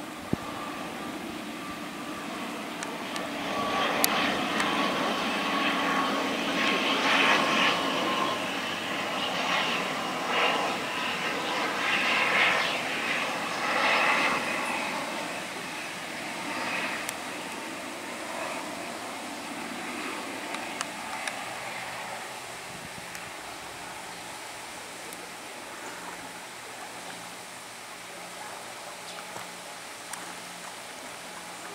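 Twin-turboprop ATR 72-600 airliner on landing approach, its engines and six-blade propellers droning as it passes low overhead. The sound swells a few seconds in, is loudest in the middle, then fades as the aircraft moves away.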